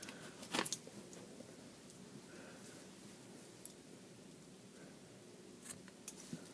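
Quiet room with faint handling sounds of a small pair of scissors and yarn: a short, sharp click about half a second in and another soft click near the end.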